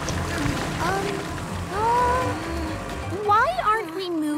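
Cartoon tractor engine running with a low, steady rumble, then cutting out suddenly near the end as the tractor bogs down in the mud.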